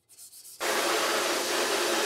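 Pressure-washer wand spraying a steady jet of water into a metal washout booth, starting abruptly about half a second in. The spray is washing photo emulsion off a screen-printing scoop coater before it dries.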